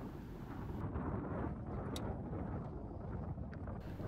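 Wind rumbling on the microphone, with one faint click about two seconds in.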